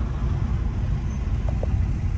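Steady low rumble of road and engine noise inside a moving BMW car's cabin, with the driver's window open.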